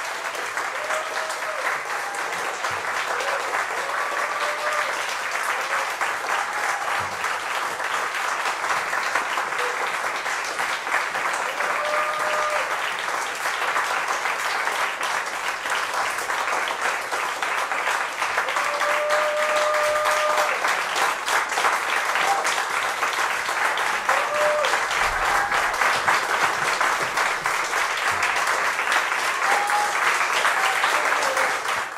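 Audience applauding steadily after a classical cello and piano performance, with a few voices calling out in cheers. The applause grows a little louder about two-thirds of the way in.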